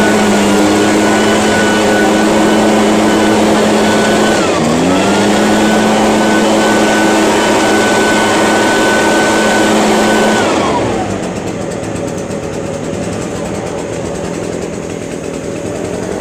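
Echo PB-580T backpack leaf blower's two-stroke engine running at full throttle with the fan rushing air. It dips briefly about four and a half seconds in and revs straight back up, then drops to idle a little before halfway through the second half.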